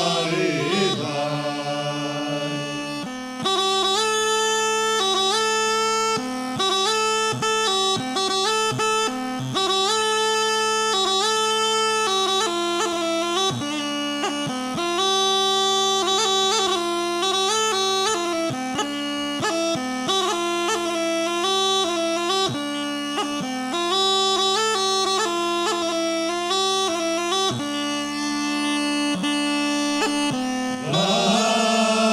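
Rhodope kaba gaida, a large low goatskin bagpipe, playing an instrumental interlude: a steady low drone under a quick, ornamented chanter melody. The men's singing dies away in the first second or so, and the drone sounds almost alone until the melody comes in about three seconds in.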